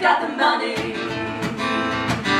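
Live pop-rock band music with female singing and guitar, heard from the audience; the bass drops out for about half a second near the start.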